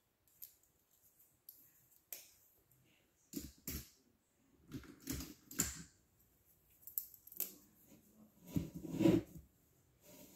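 Irregular clicks and knocks of coloring markers and their caps being handled at a table, with a heavier thump near the end.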